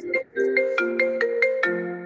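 A phone ringtone playing a melody of quick marimba-like notes, about four or five a second, interrupting the conversation.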